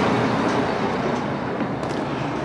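Steady rumble of street traffic, easing slightly toward the end.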